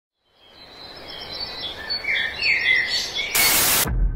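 Birdsong ambience fading in from silence: chirping calls over a soft hiss, cut off near the end by a loud burst of noise lasting about half a second.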